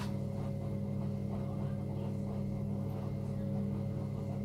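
Steady low electrical hum from a running kitchen appliance, even and unchanging.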